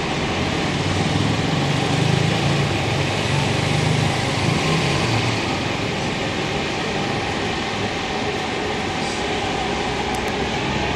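A motor vehicle running, heard from inside it: a steady rumble with hiss, the low rumble stronger for the first few seconds and then easing off.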